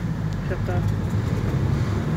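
Vehicle engine running with a steady low hum as the vehicle drives slowly along a rough dirt track, heard from inside the cabin.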